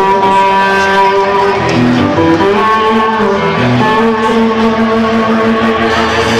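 Live band playing an instrumental passage with electric guitar to the fore, sustained notes moving in steps over the drums and bass.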